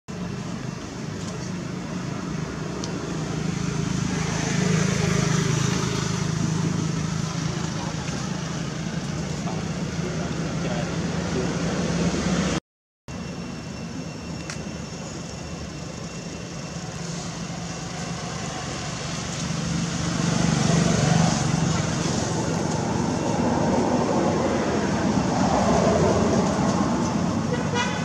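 Outdoor background of people's voices and passing motor traffic, with a vehicle horn among it. The sound drops out for a moment about halfway through, at an edit.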